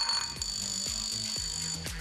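Electronic music cue of sustained, steady high tones, the signal that the teams' answering time has started.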